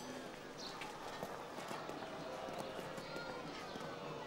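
Faint street ambience: a low murmur of distant voices with scattered clopping knocks.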